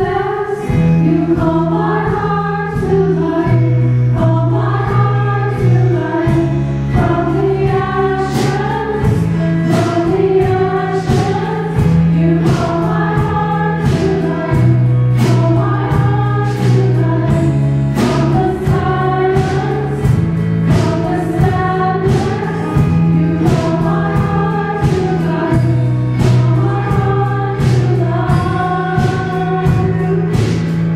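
A small church choir sings an anthem with guitar accompaniment. Under the voices, held low bass notes change every couple of seconds, and a steady beat of strums or percussion runs through.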